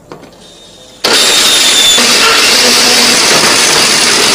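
Countertop blender switched on suddenly about a second in and running loud and steady at full speed, grinding chilies, tomatoes, shallots and garlic with a little water into a paste.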